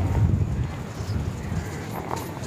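Wind buffeting the microphone on an open seashore: an uneven low rumble.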